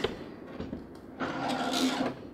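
A Robo 3D printer's injection-molded plastic case being tipped onto its back on a wooden desk: quiet handling at first, then a scraping rub that grows louder over the last second.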